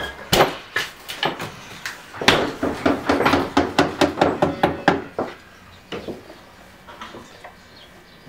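Hard knocks and clatter on wood as a miniature Jersey cow steps into a wooden milking stand: a few single knocks, then a quick run of them in the middle, thinning out toward the end.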